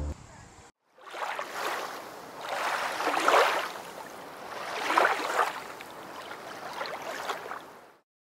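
Surf sound effect: a rushing wash of water that swells and fades three times, like waves breaking, and stops abruptly at the end.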